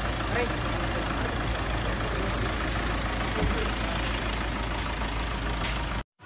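Car engine idling close by: a steady low hum with an even background hiss, under faint scattered voices.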